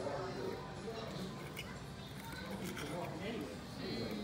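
Restaurant dining-room background: indistinct talk and background music, with a few faint clinks of a knife and fork cutting meat on a plate.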